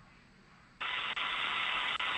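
Near silence, then a little under a second in a radio channel opens with a sudden, steady hiss. This is the air-to-ground communications loop keying open for the Dragon crew's reply.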